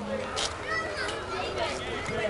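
Several people's voices overlapping in loose chatter and calling out, none of it clear speech.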